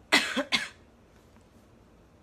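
A young woman coughing twice into her hand: two short coughs about half a second apart.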